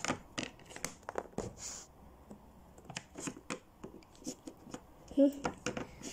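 Light, irregular clicks and taps of a small plastic Littlest Pet Shop figure being hopped and set down on a plastic-covered table, with handling rustle.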